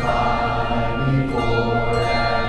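A handbell choir playing a carol, with overlapping ringing bell tones that sustain and move to new notes a few times.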